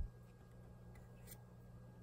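Quiet room with a low steady hum. About halfway through comes one faint click as a Pokémon trading card is moved from the front of the hand-held stack to the back.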